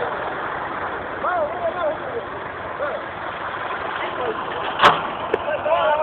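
IMT tractor diesel engine running steadily, with voices over it and a sharp knock about five seconds in.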